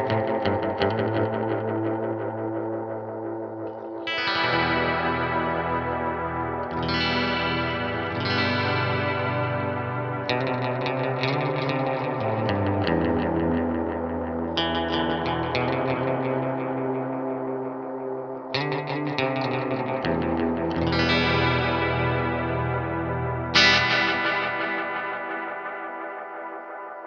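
Electric guitar played through a Source Audio Nemesis Delay pedal set for an oil-can style delay: a new chord is struck every few seconds and rings on with echoes and a chorus-like wobble, the sharpest attack coming near the end.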